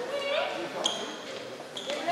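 Players' voices calling across a large, echoing sports hall, with a short high squeak about a second in and another near the end.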